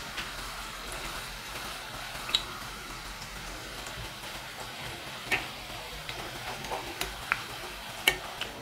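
Sweet potato chips deep-frying in hot oil in a kadhai on a low-to-medium flame, with a steady sizzle. A wire skimmer clicks against the pan a few times as the chips are stirred.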